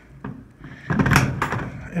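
A Ryobi 18V One+ handheld electrostatic sprayer with its battery fitted is set down upright on a tabletop: a short clatter of hard plastic and handling noise about a second in.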